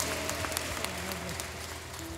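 A congregation applauding: a steady patter of many hands clapping.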